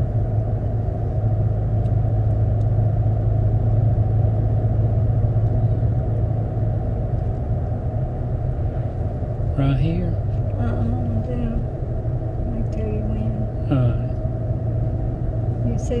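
Steady low rumble of a car driving along a paved road, engine and tyre noise heard from inside the cabin.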